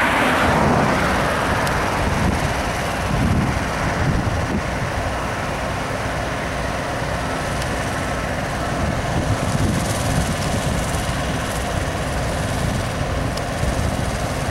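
Heavy diesel trucks and equipment at a fracking site running steadily: a continuous loud, low rumble with a faint steady hum. A brighter hiss in the first second or so fades out.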